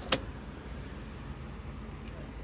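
A single sharp click shortly after the start as the key is turned in the ignition lock of a 2015 Chevrolet Spin, over a steady low hum.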